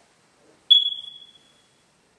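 Smoke detector giving a single high-pitched electronic chirp that starts sharply and fades out over about a second.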